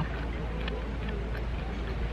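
Steady low rumble of outdoor ambience, with faint, indistinct voices in the background.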